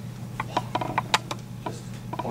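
A quick, irregular run of light clicks and knocks, about eight in just over a second, over a steady low hum.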